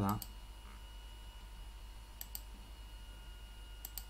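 Computer mouse clicking: a few quick pairs of sharp clicks, about two seconds in and again near the end, over a low steady hum.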